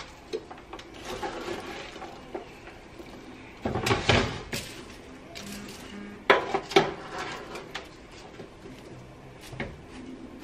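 A metal spoon stirring caramel-coated popcorn in a roasting pan: the popcorn rustles and the spoon scrapes and knocks against the pan, loudest about four seconds in and again about six and a half seconds in.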